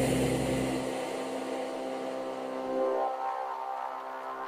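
Techno breakdown in a DJ mix: the kick and bass fade out about a second in, leaving sustained synth drone tones that swell slightly near the end.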